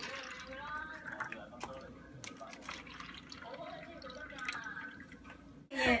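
Thai tea concentrate poured from a plastic container into foam cups, the liquid running and splashing into each cup, with small knocks of the cups and container. A short laugh breaks in just before the end.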